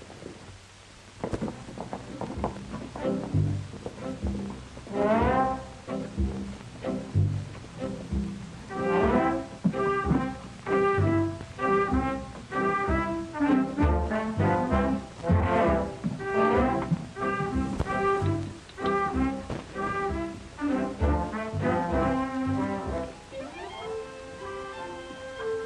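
Orchestral film score cue led by brass over a bass line, starting about a second in after a short hush, with quick upward runs of notes twice.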